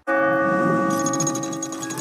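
A bell struck once, ringing on with several steady overtones that fade slowly; light, rapid ticking music comes in about a second in.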